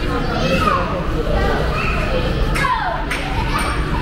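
Children's voices, chattering and calling out while they play, with one high call that falls in pitch about three seconds in, over a steady low hum.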